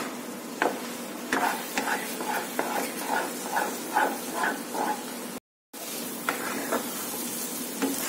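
Spatula stirring thick semolina upma in a nonstick pan on the stove: steady sizzling with regular scraping strokes, about two or three a second, and a few sharp clicks of the spatula on the pan. The sound cuts out briefly a little after five seconds.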